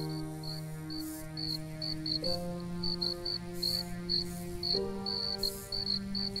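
Crickets chirping steadily over slow, sustained music chords; the chord changes twice, each held about two and a half seconds.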